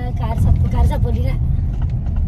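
Steady low rumble of a car in motion, heard from inside the cabin, with a person talking over it in the first second.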